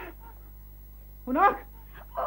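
A frightened whimper from a puppet character's voice, a short whine that rises sharply in pitch about a second and a half in.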